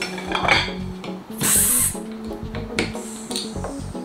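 Glass kombucha bottle pulled from a bowl of ice and its crown cap pried off with a bottle opener, with a short hiss of escaping carbonation about a second and a half in. Background music plays underneath.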